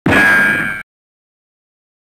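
A single loud metallic clang with a bright ringing tone, cut off abruptly under a second in.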